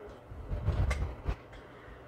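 Handling noise as a quilted fabric project bag is moved close to the microphone: a low rumble with two dull knocks, lasting under a second.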